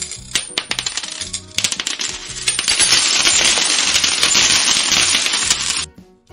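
A shower of metal coins falling and clinking onto a hard surface: scattered clinks at first, building about two and a half seconds in into a dense, continuous jingle that cuts off suddenly near the end. Music plays underneath.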